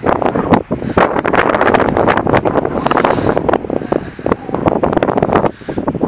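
Wind buffeting a handheld phone microphone in loud, gusty rushes, mixed with many short knocks and rustles from the microphone being handled and carried.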